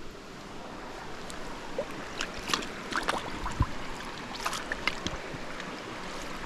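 Shallow creek water running over rocks, with scattered small splashes and knocks as a landing net is moved in the water.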